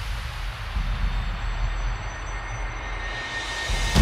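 Beatless rumbling noise sweep with deep sub-bass in a hardstyle track's intro, its hiss filtered down in the middle and opening up again. It ends in a sudden loud hit.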